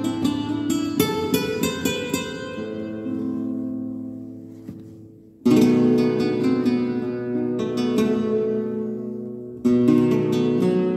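Flamenco guitar played solo in a rumba: a quick run of plucked notes, then a chord left ringing and fading for a few seconds. A hard strummed chord comes in suddenly about five and a half seconds in, and another just before the end.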